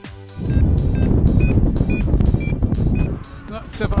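Loud wind rush buffeting the microphone of a paraglider in flight, with short high electronic beeps about twice a second, typical of a flight variometer.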